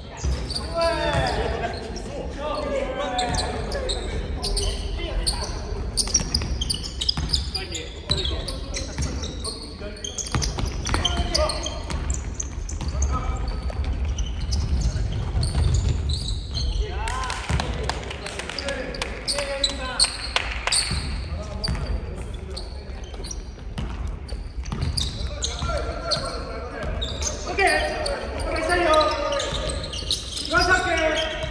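A basketball game in a large gym: the ball bouncing on the hardwood court and players calling out to each other, the voices carrying in the big hall, with the loudest calls at the start and near the end.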